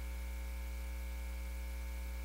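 Steady electrical mains hum: a low drone with a row of fainter higher tones above it and a light hiss.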